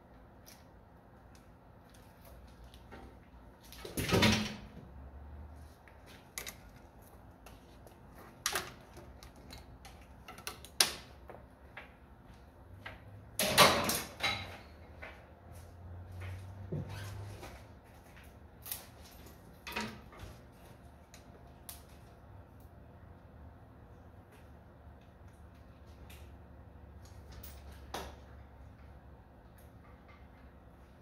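Scattered knocks and clunks, a few seconds apart: the loudest about four seconds in and a cluster of them around thirteen to fourteen seconds, with smaller single knocks between.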